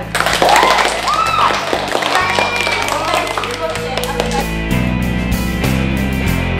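A class of children clapping and calling out for about four seconds over background music, with the music carrying on alone afterwards.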